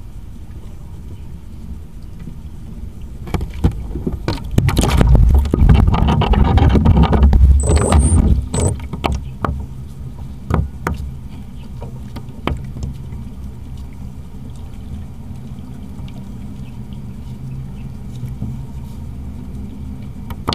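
Water splashing and slapping against the hull of a small RC speedboat as it floats beside a concrete wall, loudest for several seconds after about three seconds in, with scattered sharp knocks. A low steady hum runs underneath.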